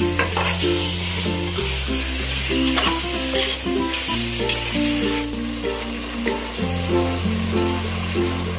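Food frying and sizzling in a pan while a spoon stirs and scrapes, under background music with a slow-moving bass line. The sizzle thins out about five seconds in, leaving mostly the music.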